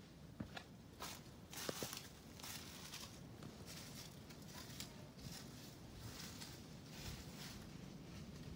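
Faint footsteps on a floor strewn with dry sticks and rubble, about one step a second, with a few light knocks in the first two seconds.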